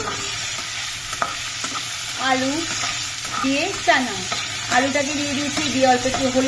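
Diced potatoes sizzling steadily as they fry in hot oil in a non-stick pan, stirred with a metal spatula that scrapes and clicks against the pan.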